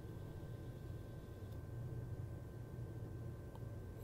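Faint low hum of a small DC derailleur motor run from a bench power supply at 3 volts, turning freely at first and then held stalled, which draws about 0.65 A.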